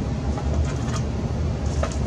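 Steady low mechanical rumble and hum, with a couple of faint clicks near the end.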